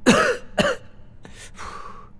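A man clearing his throat twice in quick succession, then a couple of short sharp hisses and a breathy sound.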